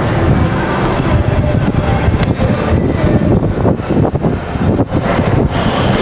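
Remote-controlled fart-noise toy (The Pooter) playing a long, low fart sound with a rapid fluttering rasp.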